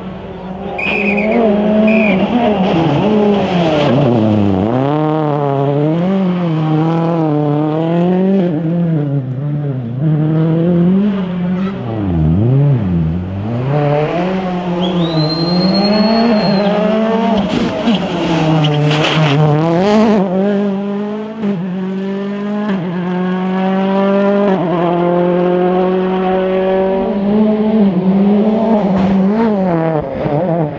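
Ford Fiesta RS WRC rally car driven hard on a tarmac stage: its turbocharged four-cylinder engine revs rise and fall again and again through gear changes and lifts for bends, ending in a long climbing pull. About halfway there is a brief high tyre squeal, followed by several sharp cracks.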